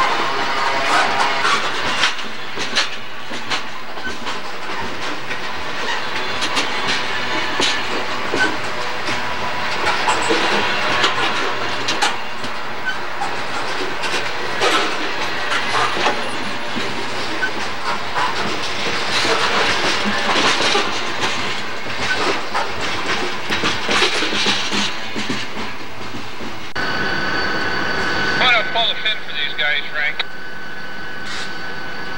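Freight train of open-top hopper cars rolling past close by, its steel wheels clicking and clanking irregularly over the rail. Near the end the sound cuts off suddenly and is replaced by steady high-pitched tones.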